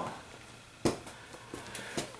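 A single sharp knock a little under a second in, followed by a few faint ticks.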